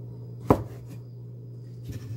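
Kitchen knife chopping through a baby king oyster mushroom onto a cutting board: one sharp chop about half a second in and a softer one near the end, over a steady low hum.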